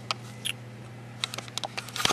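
Scattered light clicks and knocks of a handheld camera being handled and set down, with more of them near the end, over a steady low hum.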